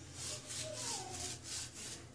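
Small foam paint roller spreading a thin coat of white glue over a sheet of EVA foam, a faint rubbing sound in repeated back-and-forth strokes.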